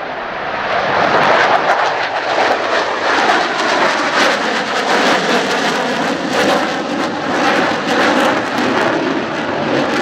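A pair of F-4EJ Kai Phantom IIs' twin J79 turbojets running at take-off power as the jets fly past. The roar swells over the first second or so, then holds loud and crackling.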